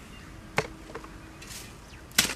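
A labourer's hand tools knocking as he digs soil: one sharp knock about half a second in, then a fainter one shortly after.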